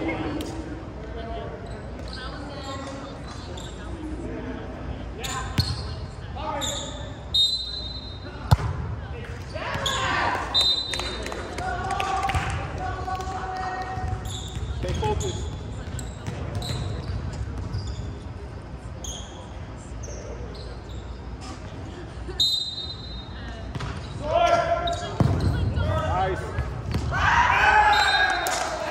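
Indoor volleyball play: the ball is struck and hits the court with sharp, scattered smacks, and players' voices call out, all echoing in a large gym hall. The voices are loudest near the end.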